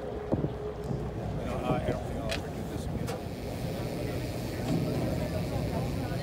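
Steady low rumble of a tour boat under way, with indistinct voices of people talking in the background.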